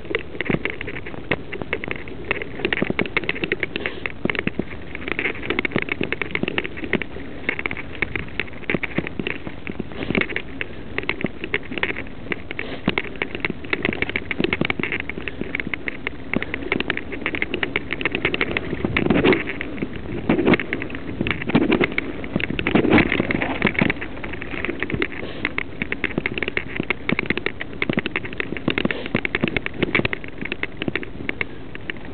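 Mountain bike riding fast over a rough woodland dirt trail: a continuous crackling rattle of the bike and the recording device jolting over stones, roots and leaf litter, with a run of heavier knocks about two-thirds of the way through.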